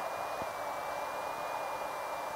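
Steady hiss of the aircraft's interphone and radio audio channel between transmissions, with a faint, thin high-pitched tone held steady through it.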